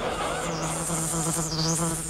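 A fly buzzing in one steady drone lasting about two seconds.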